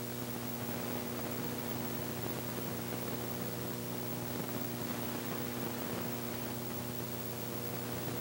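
Steady electrical mains hum with its overtones over a background of hiss: the noise floor of an old film soundtrack transfer, with no speech or music. The deepest part of the hum weakens after two or three seconds.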